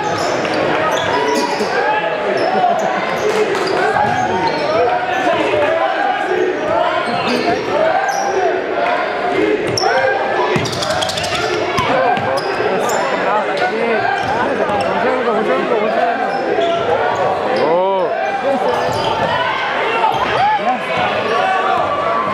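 Basketball game in a gym: the ball bouncing on the hardwood court, many short sneaker squeaks and players' voices calling out throughout.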